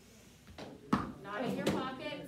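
A single sharp click just under a second in, then a voice speaking.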